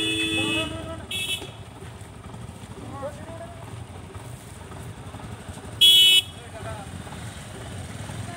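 Vehicle horn honking three times: a blast of about a second at the start, a short toot just after it, and a louder short blast about six seconds in.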